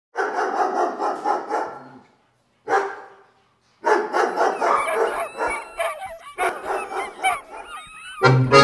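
A team of sled huskies in harness barking and yipping in a fast, overlapping chatter, with high whining howls joining in over the second half.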